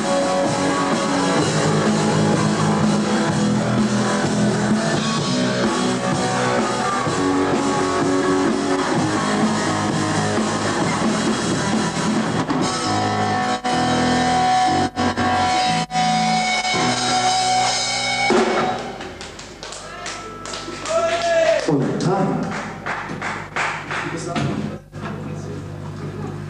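Live rock trio playing loudly: distorted electric guitar, bass guitar and drum kit. The song breaks off about two-thirds of the way in, leaving a quieter, scattered stretch with a falling pitched note.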